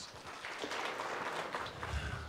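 A small audience applauding, steady and fairly quiet.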